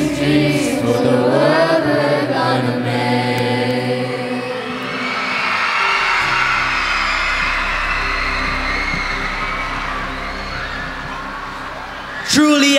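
A children's choir singing the final notes of a song over a backing track, then an audience applauding and cheering, the applause fading toward the end.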